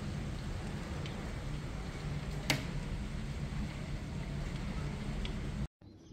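Heavy rain pouring steadily with a low rumble underneath, a few faint ticks and one sharp click about two and a half seconds in; it cuts off abruptly just before the end.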